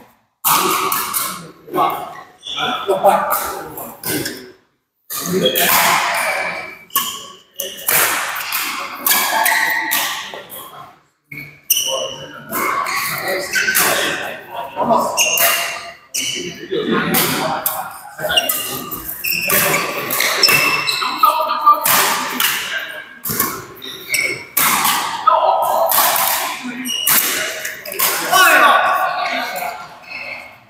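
Badminton doubles rally in a large indoor hall: repeated sharp racket hits on the shuttlecock and short shoe squeaks on the court floor, echoing, with players' voices between points.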